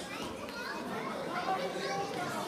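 Overlapping chatter of many voices, children among them, in a large indoor sports hall.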